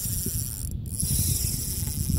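Spinning reel being cranked to retrieve line, its gears and rotor giving a rapid fine ticking.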